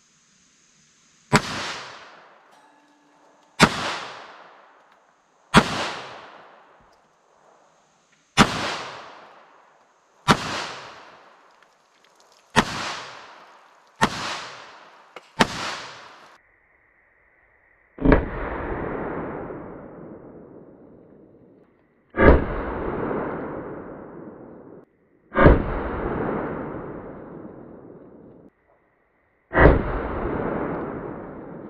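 Twelve pistol shots from a .380 ACP handgun. Eight sharp, short reports come about two seconds apart. After a short gap, four more are heard closer to the target, with longer echoing tails.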